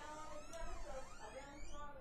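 A faint voice speaking, its pitch wavering up and down.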